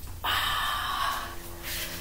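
A woman breathing out hard with effort during a bodyweight exercise, a hissing exhale that starts about a quarter second in and lasts over a second, followed by a softer breath near the end.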